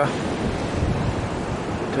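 Wind buffeting the microphone over choppy harbour sea, a steady rushing noise heaviest in the low end.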